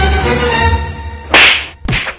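Bass-heavy music fading out, then a loud whip crack about one and a half seconds in, followed by a sharp smack near the end.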